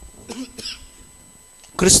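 A man clears his throat softly and briefly during a pause in his preaching, and his loud speech resumes near the end.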